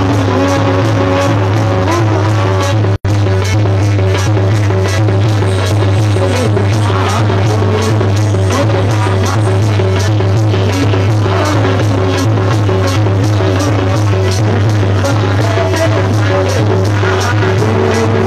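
Maijbhandari devotional song played live: tabla drums keep up a fast, steady rhythm with harmonium, over a steady low hum, and male voices sing in phrases at times. The sound cuts out for an instant about three seconds in.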